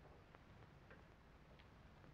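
Near silence: the low hum and hiss of an old film soundtrack, with three faint, irregularly spaced clicks.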